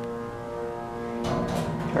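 Schindler hydraulic elevator running up with a steady pitched hum, heard from inside the car, as it comes into the upper level. The hum fades about a second and a bit in as the car stops, and a rushing noise follows.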